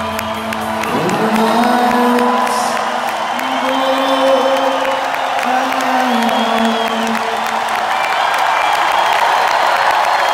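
Live arena concert sound: the band's low, droning music stops right at the start. A large crowd then cheers, with long held sung notes rising over the noise for several seconds.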